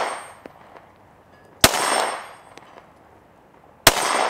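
Two shots from a Stoeger STR-9C compact 9mm pistol, about two seconds apart, each sharp crack followed by a ringing tail that fades over most of a second. The tail of an earlier shot fades out in the first half second.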